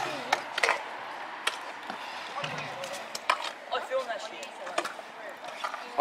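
Trick scooters rolling on concrete, with irregular sharp clacks and knocks of decks and wheels hitting the ground and ramps, over a background of voices.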